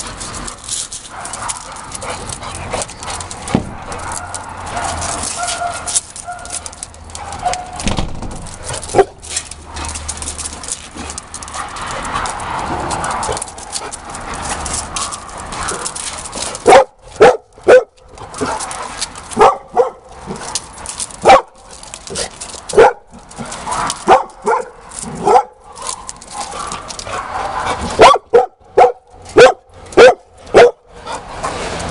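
Dogs at play barking: through the first half a steady mix of quieter dog noises, then from about halfway in a string of loud, sharp, short barks in quick bursts of two or three.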